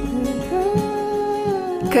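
A voice humming one long, nearly steady note over soft background music.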